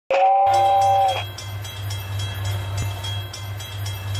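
Train sound effect: a steady two-tone whistle for about a second, then a train running on rails with a steady low rumble and regular clicking, about four clicks a second.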